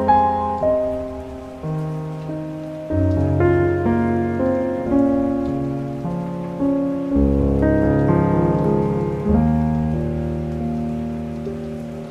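Calm, slow piano music, its notes ringing out and fading, with a deep bass note struck every few seconds. Under it runs a steady patter of rain.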